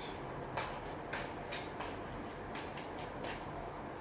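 Steady background hum and hiss with a faint low drone, broken by a scattering of soft clicks, about seven in four seconds.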